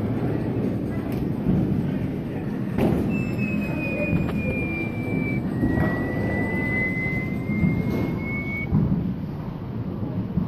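Steady din of an arcade: game machines and background voices, with two long electronic tones from a machine in the middle, the first gliding slightly down, the second slightly up.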